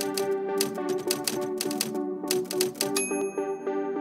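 Typewriter sound effect, a quick run of key clacks, over background music, ending in a single typewriter bell ding about three seconds in.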